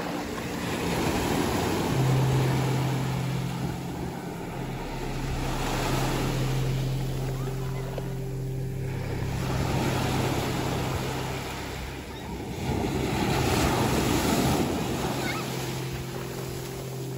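Sea surf breaking and washing over the shallows, swelling and falling about every four seconds, with a steady low hum underneath.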